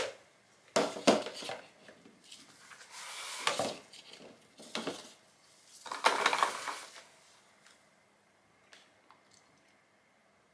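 Plastic measuring jugs being set down and shuffled on a stainless steel counter: several bursts of clattering knocks in the first seven seconds, then it goes much quieter.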